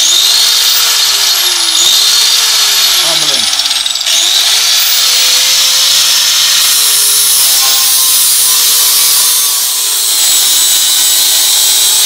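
Electric angle grinder running with a new abrasive disc, grinding old paint and rust off a steel plate. The motor's whine sags as the disc is pressed into the metal, and picks back up when the load eases about four seconds in.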